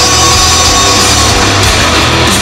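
Live hard rock band playing loud, with distorted electric guitars, bass and drums, recorded from the audience.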